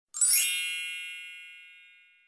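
A bright chime sound effect for an intro title card: a quick rising shimmer just after the start, then a cluster of high ringing tones that fade slowly away.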